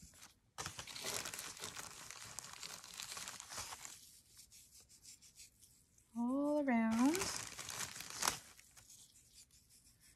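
Sand sprinkled from a plastic zip-lock bag onto a glue-covered paper sea star, a crackly, crinkling rustle in two stretches. A short wordless voice sound comes between them, about six seconds in.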